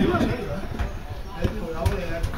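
Outdoor football match sound: men's shouts from the pitch, with two sharp thuds of a football being kicked about one and a half and nearly two seconds in.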